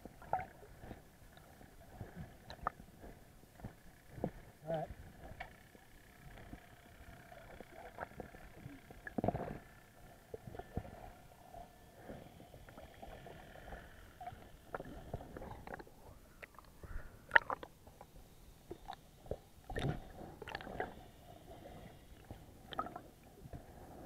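Muffled underwater sound picked up by a submerged camera: scattered knocks and clicks over a faint steady hum, the sharpest click about seventeen seconds in.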